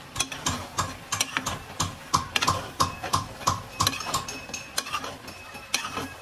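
A flat metal spatula scraping and clinking against a metal kadai while stirring spiced chicken pieces, in an even rhythm of about three strokes a second.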